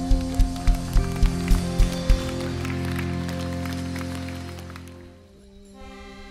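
Live worship band music: a kick drum beats about three times a second under a held chord, the drumming stops about two seconds in and the chord rings on and fades out. Near the end a new piece begins with sustained accordion-like tones.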